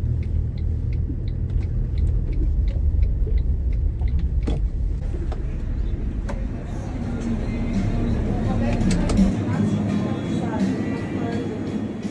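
Low, steady road rumble of a Toyota Land Cruiser Troop Carrier heard from inside the cabin as it drives onto a fuel station forecourt. The rumble cuts off suddenly about nine seconds in, giving way to voices and background sound inside a shop.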